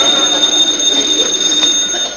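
Telephone bell ringing in one continuous ring.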